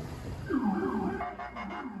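Police vehicle siren sounding a fast yelp: a quick falling wail repeated about four times a second, starting about half a second in.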